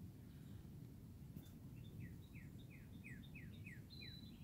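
Faint bird calls: a run of about eight short, high, downward-slurred notes, roughly four a second, starting about halfway through, over a low outdoor background hum.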